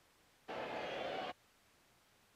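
A brief snippet of baseball broadcast sound, under a second long, that cuts in and stops abruptly amid near silence, as a recorder briefly plays between fast-forward and rewind.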